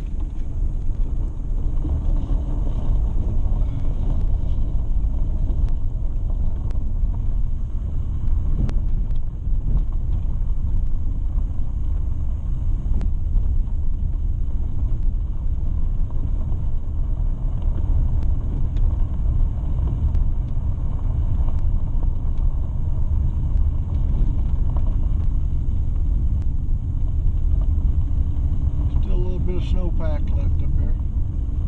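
Steady low rumble of a vehicle driving slowly on an unpaved dirt road, heard from inside the cabin: engine and tyres on gravel, with a few faint knocks from the rough surface.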